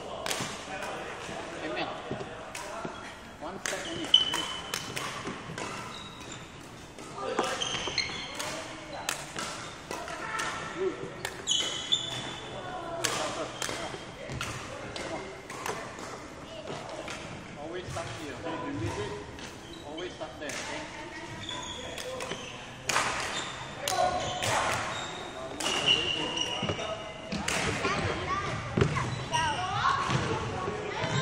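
Court shoes squeaking and stepping on a wooden badminton court, with scattered sharp knocks throughout and several short high squeaks, echoing in a large hall.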